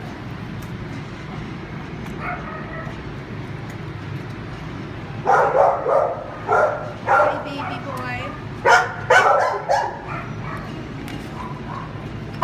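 A dog barking and yipping in a run of short, sharp barks from about five to ten seconds in, over a steady low background hum.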